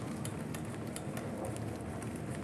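Motorised treadmill running at a light jogging pace of nine kilometres an hour, with a steady low hum, and a runner's footfalls landing on the belt about three times a second.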